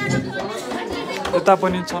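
Several people talking over one another in a room: mixed voices and chatter.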